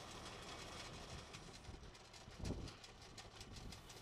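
Faint, steady low rumble of a tractor running while its rear-mounted twin augers drill planting holes in tilled soil.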